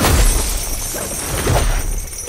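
Sound-effect crash of a lightning strike hitting stone ground: a sharp shattering impact at the start with a low rumble after it, and a second, smaller hit about one and a half seconds in.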